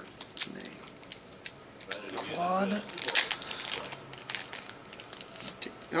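Trading cards, some in hard plastic holders, being handled and flipped through: a run of sharp irregular clicks and rustles, with a short murmur of a voice a little after two seconds in.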